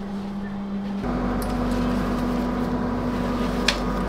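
Steady hum inside a train carriage, with a low steady tone under it, stepping up slightly in pitch and level about a second in. A single sharp click near the end as a backpack is handled on the overhead luggage rack.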